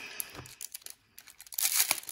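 Foil wrapper of a hockey card pack crinkling in the hands with scattered faint crackles, then a louder burst of crinkling and tearing near the end as the pack is ripped open.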